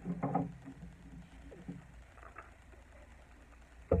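Quiet handling of a resin ball-jointed doll on bubble wrap: small clicks and rustles in the first couple of seconds, then close to quiet.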